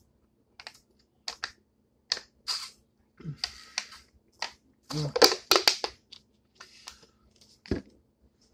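A man drinking water from a glass: a string of short swallows, gulps and small clicks of mouth and glass, thickest about five seconds in, with a sharper knock near the end.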